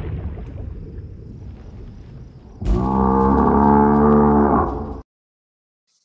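Closing sound design of a film trailer. A low rumble fades away, then a deep, steady, drawn-out tone or creature-like call with many overtones starts suddenly about two and a half seconds in. It lasts about two seconds and cuts off abruptly.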